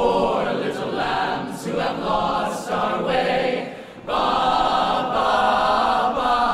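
An a cappella vocal group singing in close harmony. A phrase ends shortly before four seconds in, and a full chord is then held to the end.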